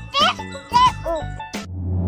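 A little girl's high voice in short, excited calls over light children's background music with tinkling chimes; near the end the voice stops and a louder tune begins.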